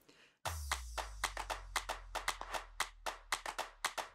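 Edited-in title-card sound effect: about half a second in, a low bass tone comes in and slowly fades, under a run of quick, irregular clicks, roughly five or six a second.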